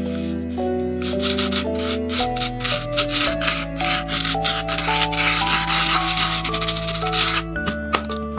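A plastic spoon rubbing and scraping coloured sand across a sand-art card in quick repeated strokes. The strokes start about a second in, run together into a steady rub past the middle, and stop shortly before the end.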